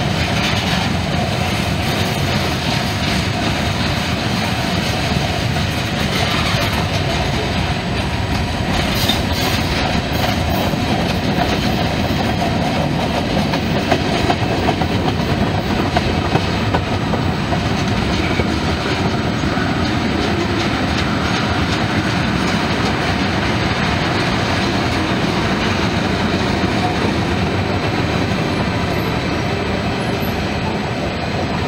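Freight cars rolling past close by: a steady rumble of steel wheels on rail with wheel clacking, and a few louder clicks and bangs in the middle.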